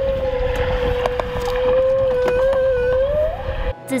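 A male humpback whale's song picked up by a hydrophone and played through its loudspeaker: one long held note, steady and then rising slightly before it cuts off near the end. A low rumble from the boat runs underneath.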